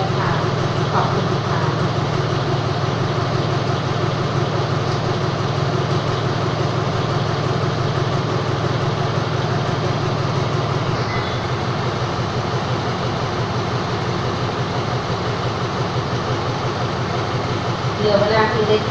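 Diesel locomotive of a stationary passenger train idling, a steady low engine drone that eases slightly partway through.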